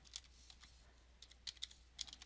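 Faint computer keyboard and mouse clicks: a handful of single taps, two of them close together about a second and a half in.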